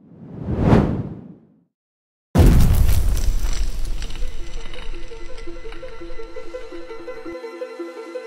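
Intro sting of sound effects and music: a whoosh that swells and fades over about a second and a half, a short silence, then a sudden loud hit that opens into music with a repeating melodic figure, slowly getting quieter.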